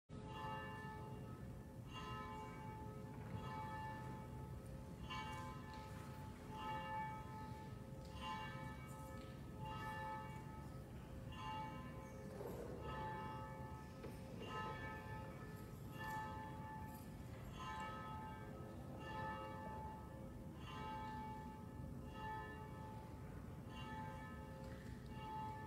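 Church bells ringing, struck every second or two in an uneven pattern, each bell's tone ringing on under the next strike.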